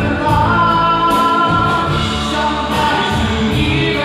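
Live band music played through a PA: electric guitars and drums with regular cymbal hits, and a singer holding long notes.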